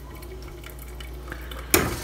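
Steady low hum, then one sharp clink of kitchen cookware near the end.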